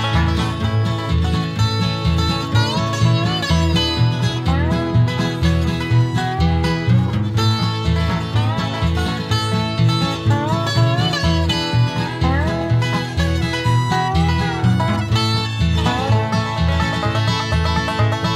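Bluegrass string band playing an instrumental tune, banjo and guitar over a steady bass, with a lead instrument sliding between notes now and then.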